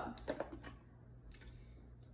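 A few faint clicks and knocks of hard plastic as a food processor's work bowl is unlocked and lifted off its base.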